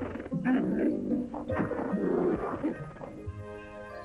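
Animated polar bears grunting and growling over a music soundtrack, giving way to a sustained musical chord about three seconds in.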